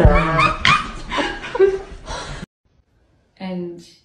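A person's voice with chuckling laughter, which cuts off abruptly about two and a half seconds in, followed by a brief voice-like sound near the end.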